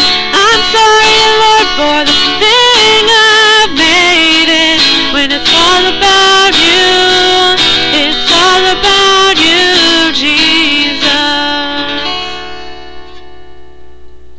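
Closing bars of a contemporary Christian worship song: wordless singing with wavering, sliding notes over acoustic guitar chords, fading out about twelve seconds in.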